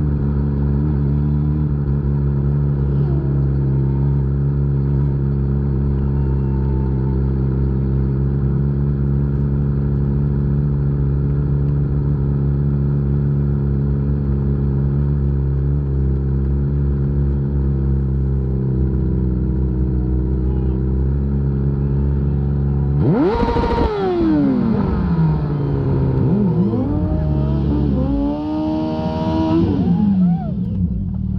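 Kawasaki superbike engine running steadily at low revs. About 23 seconds in, its pitch drops sharply as the revs fall away, and excited voices rise near the end.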